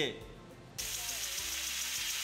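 Steady hiss of water spraying from a field sprinkler, starting suddenly about a second in.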